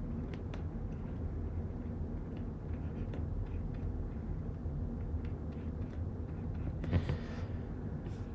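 Low steady background rumble from the recording setup, with faint scattered ticks from a stylus tapping and writing on a drawing tablet, and a brief soft hiss near the end.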